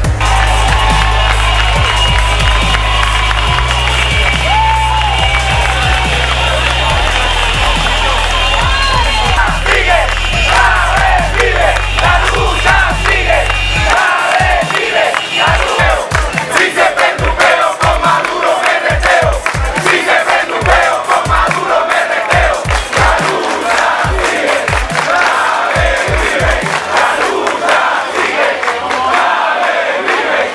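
A crowd shouting and chanting, over electronic music with a heavy held bass line for the first half. About halfway in, the bass drops out and a steady low beat of roughly two thumps a second runs under the chanting, fading near the end.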